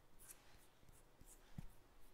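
Near silence, with faint light rubbing of fingertips over freshly shaved neck skin, feeling its smoothness.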